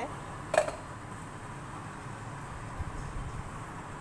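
A single sharp metallic clink about half a second in, ringing briefly, like a steel utensil or container knocking against metal. After it there is only a low, steady background noise while oil heats quietly in a small iron tadka pan on a gas hob.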